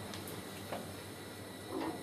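Quiet, steady room background, with the start of a man's voice near the end.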